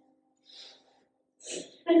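A pause in speech with two short breaths into the microphone. The first is faint, and the second is a louder, sharper intake just before the speaker goes on.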